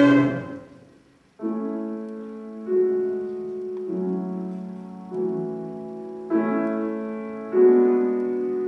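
A loud held chord dies away in the first second, leaving a moment of near silence. Then a grand piano plays a slow sequence of six sustained chords, one about every second and a quarter, each struck and left to ring into the next.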